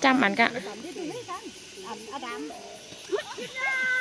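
Women's voices talking and calling out to one another in bursts, with one held high-pitched call near the end.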